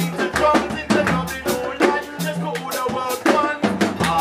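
Live band playing an upbeat groove: a drum kit keeps a steady beat of snare and bass drum over held electric bass notes that change every half second or so.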